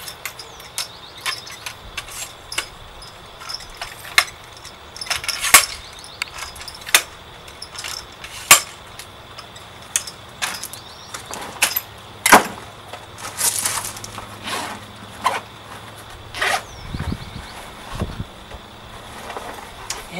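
Scattered clicks and clacks of a lightweight camera tripod being set up, its legs pulled out and locked, at irregular intervals with a few sharper knocks; near the end, gear handled at a backpack.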